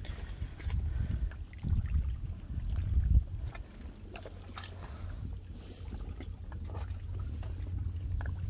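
Low rumble of wind buffeting the microphone, gusting harder in the first three seconds and easing after, with scattered light clicks and taps.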